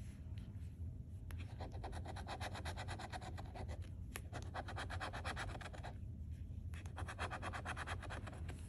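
A flat metal scratcher tool scraping the latex coating off a lottery scratch-off ticket in rapid back-and-forth strokes. There are brief pauses about a second in and again near six seconds.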